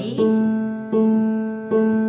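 Piano playing a left-hand A, struck three times at an even pace, each note ringing and fading before the next.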